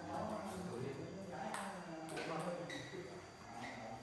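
Voices talking in a hall, with a handful of sharp, ringing clicks of a table-tennis ball bouncing, irregularly spaced, the clearest about halfway through and near the end.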